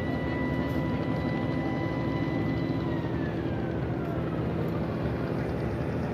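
A steady mechanical drone with strong low hum, carrying a faint high whine that holds one pitch and then slides downward from about halfway through.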